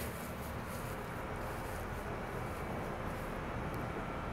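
Steady outdoor background noise: an even low rumble and hiss with no distinct event.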